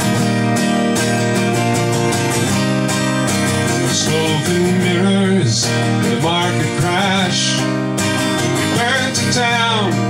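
Acoustic guitar strummed steadily in a folk song, with a man's singing voice coming in over it from about four seconds in.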